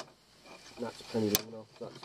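A man's brief wordless murmuring, with a single sharp click just past the middle.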